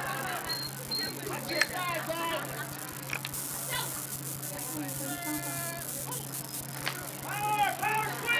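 Indistinct shouting voices of players and spectators at a youth football game, with one long held call about five seconds in, over a steady low hum.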